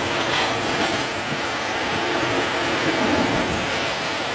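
Waves surging over a sandy shore: a steady rushing noise of churning water, a little louder about three seconds in.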